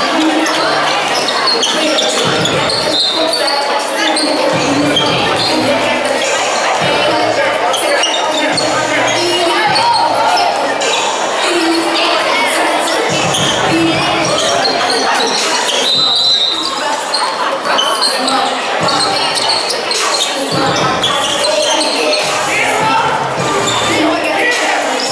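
Basketball game sound in a gym: a ball bouncing on the court among many voices from players and crowd.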